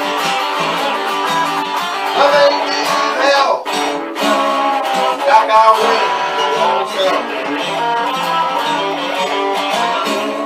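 Solid-body Stratocaster-style electric guitar playing a blues, with string bends that bend the notes up and down.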